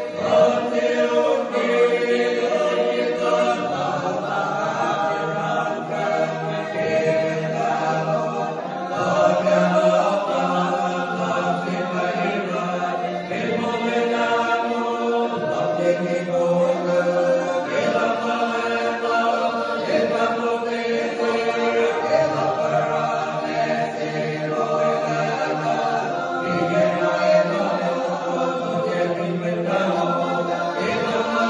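Men's choir singing unaccompanied, holding long chords that change every second or two.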